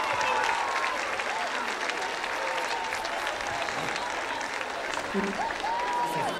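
Large audience applauding steadily, a dense patter of many hands clapping.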